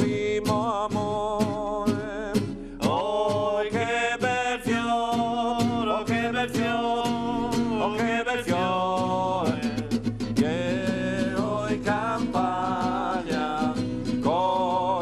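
A man singing a Triestine folk song in long, wavering phrases, accompanying himself on a strummed nylon-string classical guitar.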